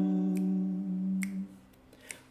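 An acoustic ukulele chord rings out after a thumb strum and fades away about a second and a half in. It is followed by a faint click or two of handling.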